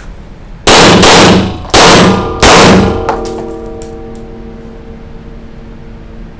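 Four loud gunshots in quick succession within about two seconds, followed by a ringing that fades out over a few seconds.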